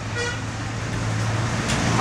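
Road traffic passing: a motor vehicle's engine hum and tyre noise swell up as it passes by, with a short car horn toot shortly after the start.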